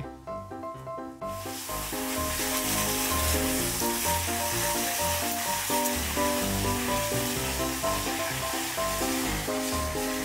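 Water gushing from a garden hose pushed into the soil among fingerroot (krachai) plants. It starts about a second in as the water is turned on, a steady hiss flushing the earth loose around the rhizomes so they can be pulled up for harvest. Background music plays along.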